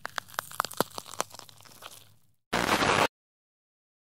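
Digital glitch sound effect: a run of irregular crackling clicks for about two seconds, then a sudden half-second burst of loud static.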